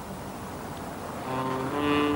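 Opening title theme music with long held notes; a new chord comes in a little over a second in and swells.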